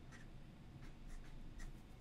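Fountain pen nib scratching faintly on paper in several short strokes, writing a number and drawing a box around it.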